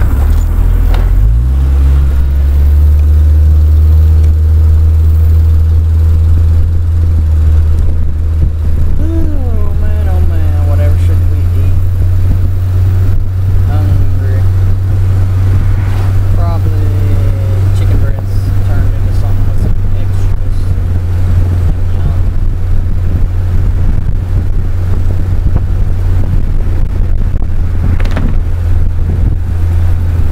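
Car engine running as the car drives with the top down, rising in pitch as it speeds up about a second in. Wind rumbling loudly on the microphone.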